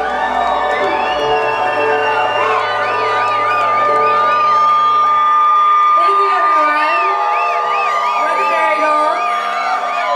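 A live band's final long held note rings out, its low end dropping away about halfway through. The audience cheers and whoops over it, with wavering high calls.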